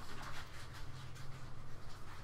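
Faint room tone over a headset microphone: a low steady hum with scattered soft clicks and rustles.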